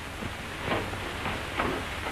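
Steady hiss of an old film soundtrack, with a few faint, brief noises.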